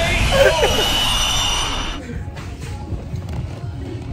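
Edited-in 'K.O.' sound effect: a sudden hissing crash that fades over about two seconds, with a brief voice in it near the start.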